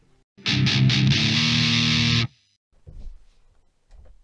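Electric guitar played through distortion: a few quick picked chugs, then a held chord for about a second, cut off abruptly.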